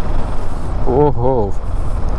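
Steady wind and road rumble with a new motorcycle's engine running underneath at an easy city pace, the engine kept at low revs during its break-in.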